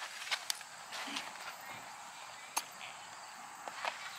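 A few sharp clicks and taps of saddle tack being handled on a horse, the clearest about half a second in and again just past halfway, with faint voices in the background.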